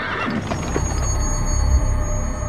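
A horse whinnying, with sustained music tones coming in about half a second in.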